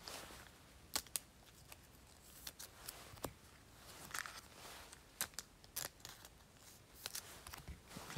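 Faint, scattered clicks and soft rustles of baseball trading cards being handled and slid into plastic card sleeves.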